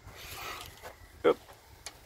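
A lull with faint rustling, one short spoken word, and a single small sharp click near the end.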